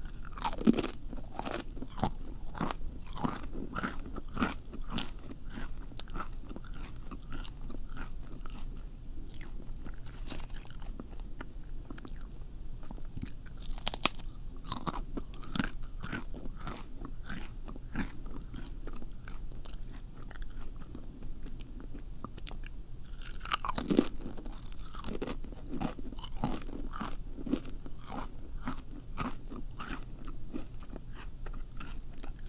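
Crunchy food being bitten and chewed close to the microphone: a continuous, irregular run of crisp crunches, with louder bites about a second in, midway, and about six seconds before the end.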